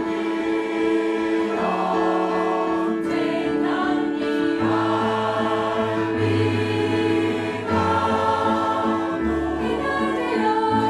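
Mixed choir of men and women singing in harmony, holding chords that change every second or so. A low bass part comes in about halfway through.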